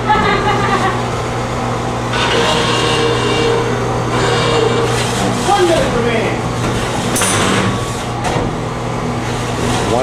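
Small electric drive motors of two beetleweight combat robots running as they drive and shove against each other, with a brief metal scrape about seven seconds in, over people talking.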